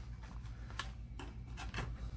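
A few faint, short clicks and taps from handling a small cutting tool and a trimmed plastic cable tie, over a steady low hum.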